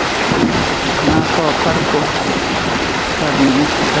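Water of a swollen canal rushing through a concrete sluice channel, a loud steady rush.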